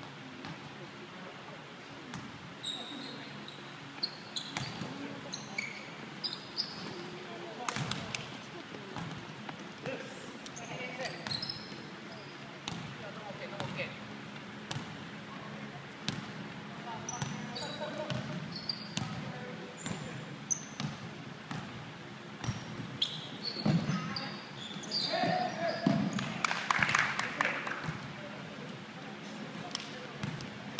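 Basketball bouncing and thudding on a wooden gym floor during a game, with sneakers squeaking and players calling out; the voices grow louder near the end.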